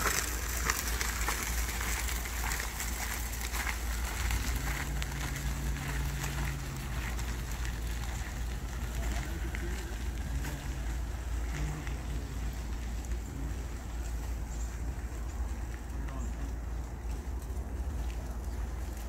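Wheelchair and handcycle wheels and footsteps crunching on a crushed-stone trail, the crunching thinning out as they move away, over a steady low wind rumble on the microphone.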